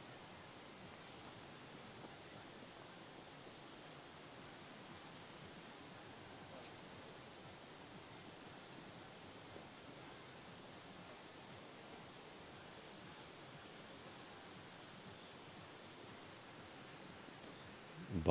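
Near silence: a faint, steady hiss of outdoor ambience.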